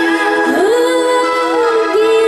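A woman singing an Indian-style song through a microphone over a steady held drone. Her voice slides up about half a second in and holds one long note, dipping near the end.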